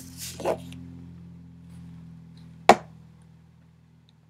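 A steady low electrical-sounding hum with a brief soft sound at the start and one sharp click about two and a half seconds in.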